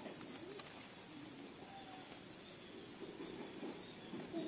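Faint cooing of a dove in the background, a few soft low calls.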